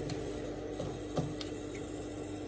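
Fabric being handled at a sewing machine, with a few light clicks and one sharper click about a second in, over a steady low hum.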